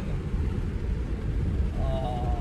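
Steady low rumble of a Mercury Marauder's 4.6-litre 32-valve V8 and road noise, heard from inside the cabin while cruising.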